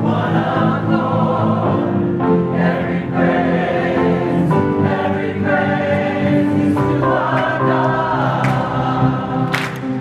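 Mixed choir of men's and women's voices singing together, holding sustained chords that shift in pitch. A single sharp clap-like crack sounds near the end.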